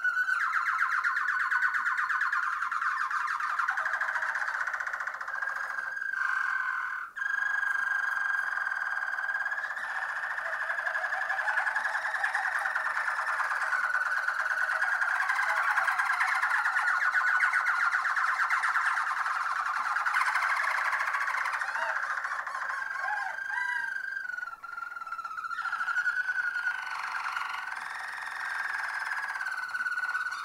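Harzer Roller canary singing one long, continuous rolling song of trills that shifts slowly up and down in pitch. It breaks off only briefly, about seven seconds in and again near twenty-five seconds.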